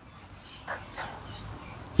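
A quiet pause with low room tone and two faint, brief animal calls a little before the middle.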